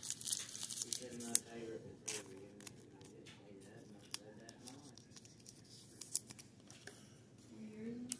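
Trading card being slid into a soft plastic penny sleeve and a rigid plastic toploader: short crinkles, rustles and clicks of thin plastic, thickest in the first couple of seconds, then scattered.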